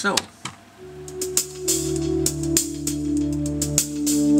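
Playback of a song intro: a sustained, round synthesizer pad with a subtle hi-hat ticking over it, the hi-hat carrying delay and reverb. The pad and hi-hat come in about a second in.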